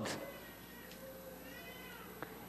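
Faint high-pitched cry that rises and falls once in the second half, heard over the quiet room tone of a large hall.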